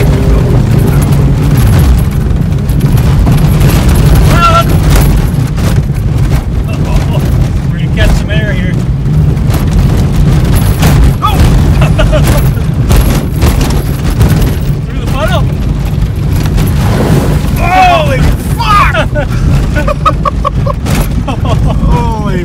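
Pontiac race car's engine running hard and loud, heard from inside the cabin on a rough dirt lap, with a deep, boomy exhaust: the muffler has come off during the lap. Occupants shout and laugh now and then over it.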